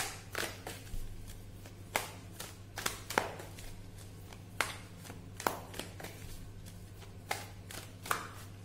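Tarot cards being handled and shuffled in the hands: a dozen or so sharp, irregularly spaced clicks and snaps of the card stock, over a steady low electrical hum.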